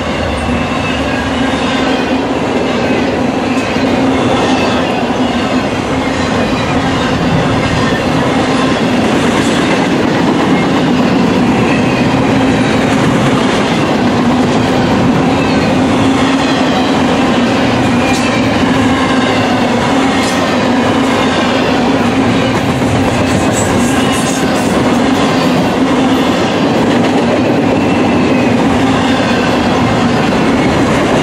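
Freight cars of an intermodal container and trailer train rolling steadily past: a loud, even rumble of steel wheels on rail.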